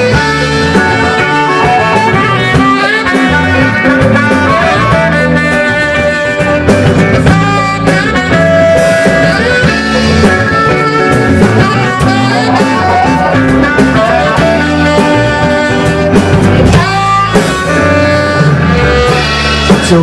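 Live rock band playing an instrumental intro with electric guitar, bass guitar, drums and saxophone, in a laid-back island-rock groove with a steady beat. The vocals come in right at the end.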